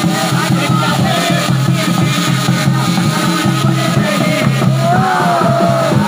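A Pahadi wedding band plays dance music: drums keep a steady beat, with a wavering melody line above them.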